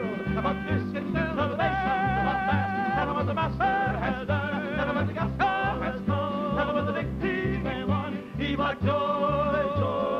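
Male folk trio singing in close harmony, holding long notes with vibrato, over a steady low bass rhythm and instrumental accompaniment.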